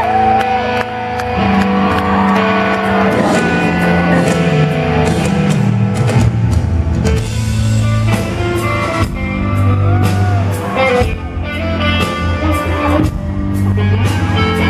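Rock band playing live: electric guitar over bass and drums, recorded from the audience.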